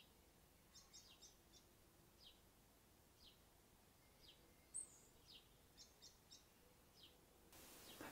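Near silence with about a dozen faint, short, high-pitched bird chirps scattered through it, each falling slightly in pitch, one a little louder about five seconds in.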